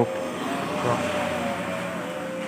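A motor vehicle's engine running steadily, with an even drone and a faint steady tone.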